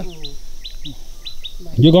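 A small bird chirping over and over: short, high, falling chirps about three a second.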